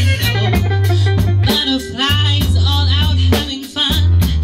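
Live rock-soul band playing: a female singer holds a long vibrato line over sustained electric bass notes, electric guitar and drums.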